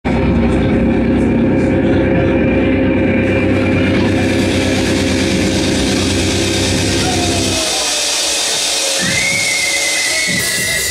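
A loud live rock band's amplified instruments holding a sustained droning chord. The low end drops out about three-quarters of the way through, leaving a falling tone and then a high, steady whine near the end.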